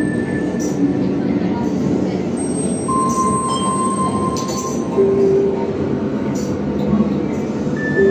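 Live experimental electronic music from a laptop orchestra: a dense, rumbling noise bed, like a passing train, with held pure tones that come and go: a high one at the start, a middle one around three seconds in, and a lower one from about five seconds.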